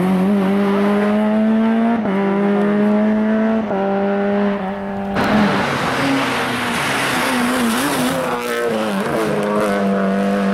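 Rally car engines at full throttle. The first car's engine climbs through the revs, with gear changes about two seconds in and again near four seconds in. Its sound is cut off suddenly just after halfway by a second car, heard as a rougher, noisier rush whose engine rises again near the end.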